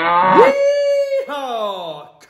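A man's drawn-out "Yee-haw!" cowboy whoop: the "yee" rises and is held on one high note, then the "haw" falls away.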